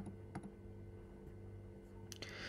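Two faint clicks of computer input, about 0.4 s apart, over a low steady hum.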